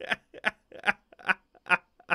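A man laughing in a run of short, evenly spaced bursts, about five in two seconds.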